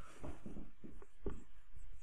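Dry-erase marker writing on a whiteboard: a run of short, irregular strokes as words are written out.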